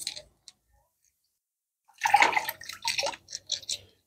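Water splashing and sloshing in short, irregular bursts from about two seconds in, as wet stones are rinsed by hand over a bucket of water.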